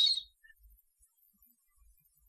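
A man's voice ending a word with a soft hiss, then near silence: room tone for the rest.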